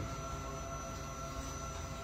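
Steady low hum of room noise with a few faint steady tones, no distinct events.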